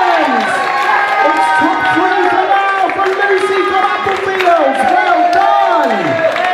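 A hall full of schoolchildren cheering and shouting together, many high voices overlapping continuously.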